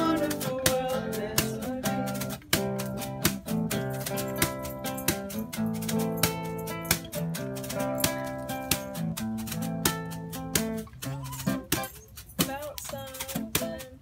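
Acoustic guitar strummed in a steady rhythm, chords ringing between the strokes. Near the end the strumming thins out and gets quieter.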